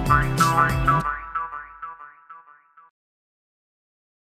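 A backing track with metal jaw harp (demir kopuz) twangs over a low drone stops abruptly about a second in, leaving a few jaw harp twangs with short sliding overtones that fade out by about three seconds in.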